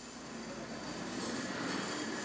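A steady rushing noise with a faint low hum, growing gradually louder.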